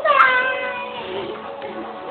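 A single drawn-out, high-pitched vocal note from a person: it rises sharply at the start, then slowly slides down, lasting about a second and a half.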